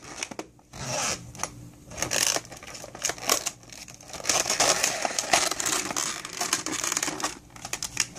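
Zipper being pulled open around a clear vinyl toy bag, with the stiff plastic crinkling and rustling as it is handled, an uneven scratchy noise full of small clicks.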